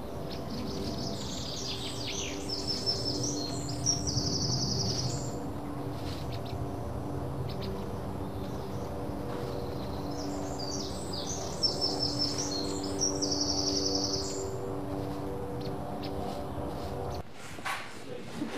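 A songbird sings two long, high phrases several seconds apart, each ending in a rapid trill, over a steady low hum. The sound cuts off abruptly near the end.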